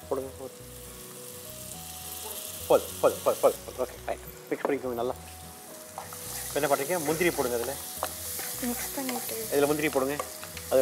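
Onion, tomato and green-chilli masala frying in oil in a non-stick kadai, stirred with a wooden spatula; the sizzle gets louder about six seconds in. A few short, louder voice-like sounds come over it.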